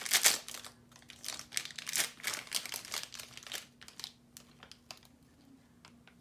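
White paper wrapping being crinkled and torn off a small toy by hand: a busy, irregular rustling that thins out after about four seconds.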